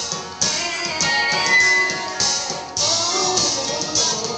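Live band playing a song, with drums keeping a steady beat.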